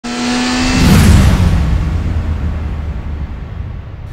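A sports car engine running at high revs with a steady pitch, then passing by about a second in, when it is loudest and the pitch drops. It fades to a low rumble.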